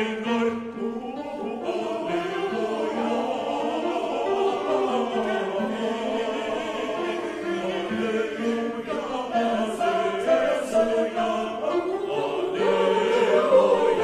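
Mixed church choir of men and women singing a hymn in several voice parts, holding long notes in harmony.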